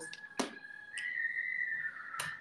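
A long, high whistle from children outside, held nearly steady and stepping up a little in pitch about a second in. There is a sharp click about half a second in.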